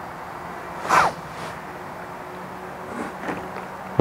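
Steady outdoor background noise with a faint low hum, and a short falling squeak about a second in.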